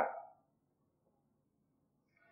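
A man's voice trailing off at the end of a word just at the start, then near silence in a speaker's pause.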